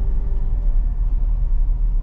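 Steady low rumble of road and engine noise inside the cabin of a Daihatsu Xenia moving slowly.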